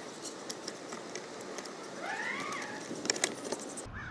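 Light clicks and rattles of small screws and metal bracket hardware being handled and fitted, with a single bird call, rising then falling, about halfway through.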